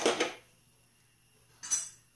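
Metal pan supports of a gas stove being set down onto the burners: a loud clatter of metal on metal at the start and a shorter clatter near the end.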